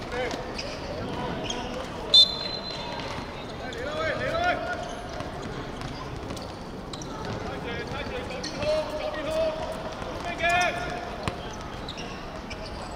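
A short, sharp whistle blast about two seconds in starts play in a small-sided football game on a hard court. Players shout to each other, and balls thud and bounce on the hard surface.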